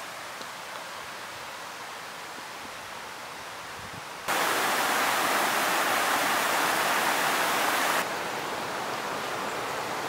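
Faint steady outdoor hiss; about four seconds in it jumps abruptly to the loud, even rushing of a small mountain creek splashing over boulders, which lasts about four seconds and cuts off suddenly, leaving a softer hiss.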